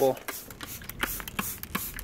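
Hand-pumped plastic trigger spray bottle squeezed over and over: a quick run of short hissing squirts, roughly three a second.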